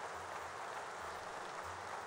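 Steady, even room noise of a large hall holding a seated audience, with a faint low hum underneath.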